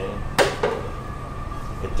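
A single sharp knock of a kitchen knife striking a cutting board while meat is being cut, with a steady faint high hum underneath.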